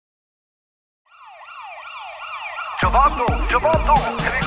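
Silence for about a second, then a cartoon siren sound effect: quick rising sweeps repeating about three times a second and growing louder. Near three seconds, song music with a heavy beat comes in over it.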